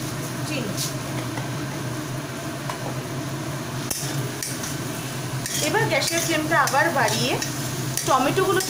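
Steel spatula stirring and scraping sliced onions, tomatoes and ground spices around a kadai as they fry, over a light sizzle. The stirring strokes begin about halfway through.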